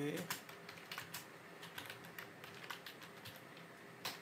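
Computer keyboard being typed on: irregular, scattered key clicks.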